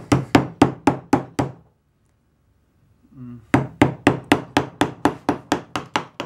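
Mallet tapping a carving chisel into limewood, sharp knocks about four a second. The tapping stops for about two seconds midway, then resumes at the same pace.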